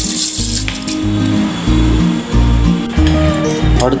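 Background music with a steady bass beat throughout. Over it, in the first moment, a brief high hissing patter of raw rice being poured into water in a steel pot.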